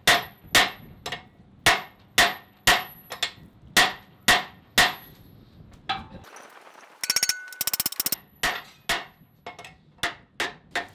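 Hand hammer blows on a red-hot 1045 steel billet on an anvil, about two a second, each a sharp ringing clang, driving a tapered drift to open the hammer's eye hole. The blows stop for a couple of seconds about halfway through, there is a brief burst of rapid clattering, and then a few more blows come near the end.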